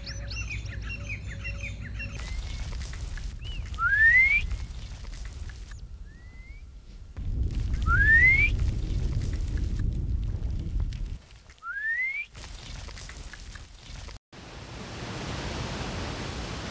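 Outdoor ambience that changes abruptly several times. It opens with many small birds chirping, then a short rising whistled call repeats about every four seconds over a low rumble of wind on the microphone, and near the end it gives way to a steady hiss.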